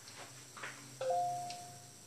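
A metal instrument clinks against a small stainless-steel bowl about a second in. The bowl rings with two steady tones that fade over about a second, after a couple of fainter scrapes.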